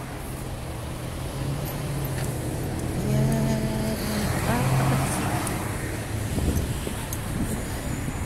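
Street traffic: a nearby vehicle engine hums steadily and grows louder towards the middle, over general roadway noise.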